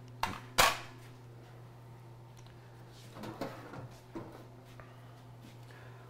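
Two sharp metallic clacks about a third of a second apart as a deep fryer's metal lid is set down on a stone countertop. A faint steady hum and a few soft knocks follow.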